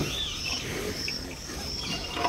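Outdoor ambience of insects buzzing in a high, pulsing drone and birds chirping, with one brief low sound right at the start.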